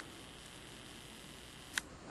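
Faint, steady whir of a camcorder's zoom motor as the lens zooms out, followed by one sharp click near the end.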